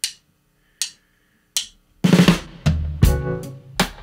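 Three count-in clicks about 0.8 s apart, then a soul band comes in together halfway through: drum kit hits over electric bass, guitar and keyboard.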